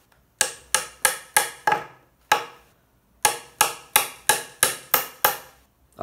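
Hammer blows on wood: about a dozen sharp strikes at roughly three a second, in two runs with a short pause in the middle, tapping wooden dowels into a pine bed-frame rail during flat-pack assembly.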